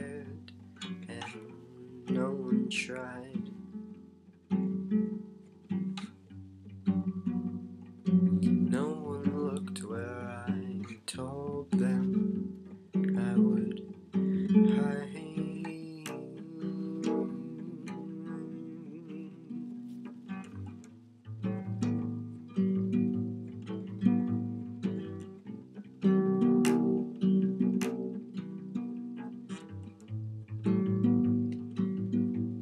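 Acoustic guitar playing, with picked chords that start sharply and ring out, one after another.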